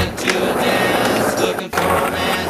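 Skateboard wheels rolling on smooth skatepark concrete, mixed with background music. The sound cuts out sharply for a moment near the end.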